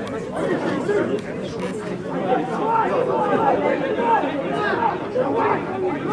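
Several people talking close by at once, overlapping chatter among spectators at a football match.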